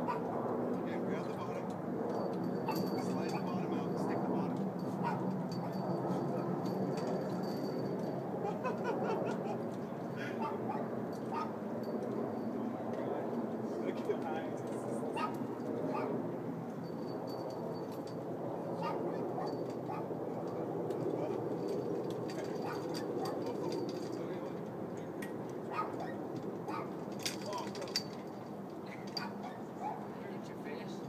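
Indistinct talk from several people, with no clear words. A few sharp knocks come through midway and again near the end.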